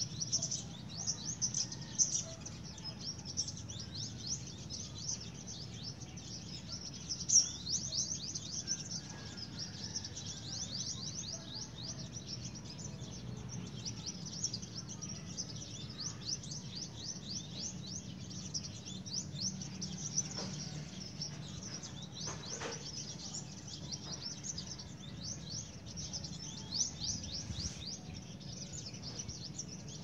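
Birds chirping continuously in dense, rapid, high twitters, over a steady low background hum.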